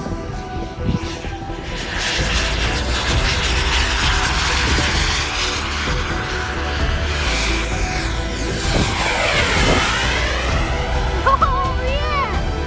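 Jet engine of a radio-controlled model A-10 making a low pass: a steady rush that builds about two seconds in, with a swooping sweep in pitch as it goes by about nine seconds in.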